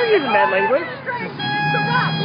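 People talking over passing road traffic, with a steady pitched tone that is held, breaks off about a second in, and starts again.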